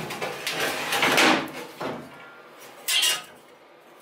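Old steel car leaf spring being laid down and slid across a wooden workbench, metal clattering and scraping on wood in loud bursts over the first second and a half, with a shorter scrape near three seconds.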